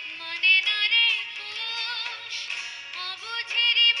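A woman singing a Bengali song with a wavering vibrato, over instrumental accompaniment.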